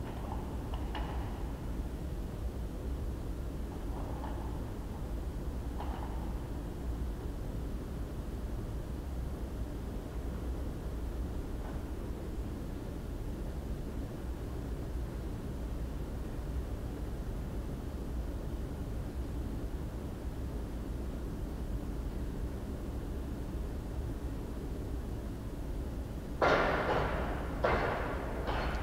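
Steady low hum of room noise with a few faint knocks. Near the end comes a loud clatter lasting about a second, as the plate-loaded barbell is carried back to the rack.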